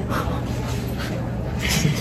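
Breathy, wordless stifled laughter from people in a small room, a few soft puffs of breath.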